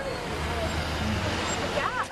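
Street traffic noise: a vehicle's low engine rumble through the first second and a half over a steady hiss of road noise, with indistinct voices mixed in.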